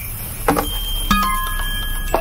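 Smartphone message notification tones sounding twice, about half a second apart, each a short chime whose pure tones hang on briefly; repeated incoming group texts.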